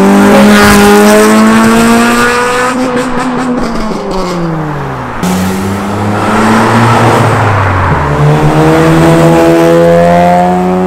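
Three modified cars pulling away in turn. First a Honda Civic Type R four-cylinder rises in pitch, then its revs fall around three seconds in with a quick run of pops. Next, from about five seconds, a Toyota GR Yaris turbo three-cylinder runs at a lower, steadier note, and near the end a Mazda RX-8 rotary engine climbs in pitch as it accelerates.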